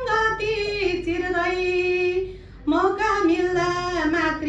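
A woman singing solo and unaccompanied into a microphone, holding long notes, with a short pause for breath a little past halfway.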